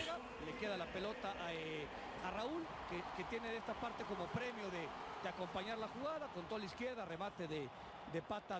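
Football TV broadcast audio at low level: a commentator talking continuously over stadium crowd noise.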